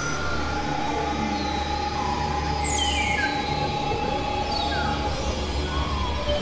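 Dense layered noise collage from several tracks playing at once: a steady low rumble under a thick hiss, with a held mid-pitched tone and several high whistling sweeps that fall in pitch, rail-like in character.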